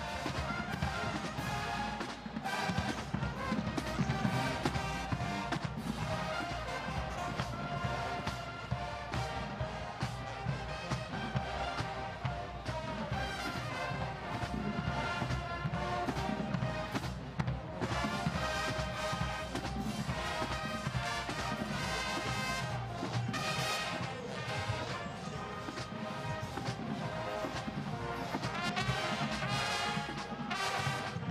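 College marching band playing at full volume, brass section over drums with a steady beat.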